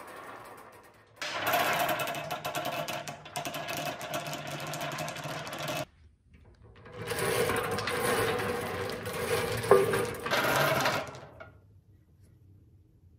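Wooden bingo balls tumbling and clattering inside a hand-cranked steel wire bingo cage as it turns, in two spells of a few seconds each with a brief pause between. A single sharp knock stands out near the end of the second spell.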